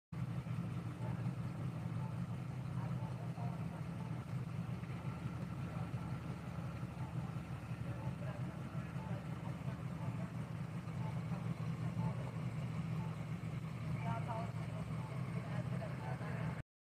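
Steady low hum of a vehicle engine idling, with faint distant voices, briefly a little clearer near the end.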